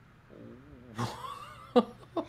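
A person's voice making a soft, wavering hum, followed about a second in by a short breathy vocal sound and a brief click near the end.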